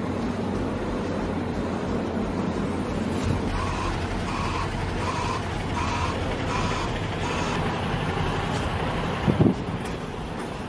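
Steady street traffic rumble. In the middle a vehicle's reversing beeper sounds a run of about seven evenly spaced beeps, and a short louder burst of noise comes near the end.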